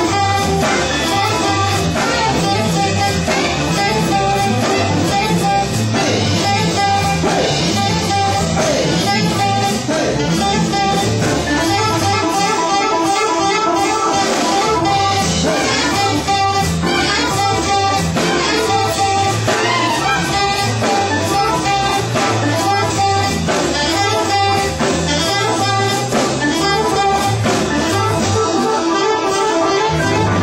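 Live organ-jazz band playing a bluesy jazz number: electric guitar to the fore over organ and drum kit, with alto saxophone in the group.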